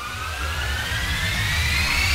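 Intro sound effect for an animated logo: a whooshing riser with a climbing whine over a low rumble, rising in pitch and growing steadily louder.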